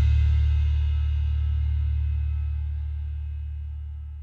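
The final chord of a rock song held and fading slowly, its low bass end strongest, with fainter ringing tones above.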